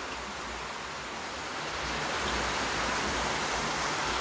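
A steady hiss of background noise, growing a little louder about halfway through.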